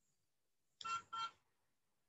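Two short electronic beeps, one right after the other, about a second in.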